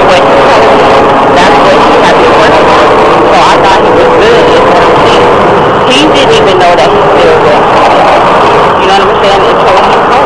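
A woman talking, her words muffled under loud, steady noise.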